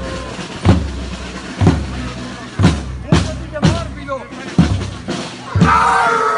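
A marching drum beating a steady processional rhythm, low strokes coming every half second to a second, over the voices of a walking crowd. Near the end a held, high-pitched melody starts over the drumbeat.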